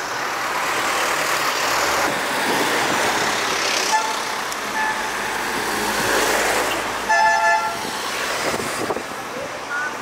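Road traffic passing along a busy street, with two short beeps about four and five seconds in and a car horn sounding loudly for about half a second a little after seven seconds.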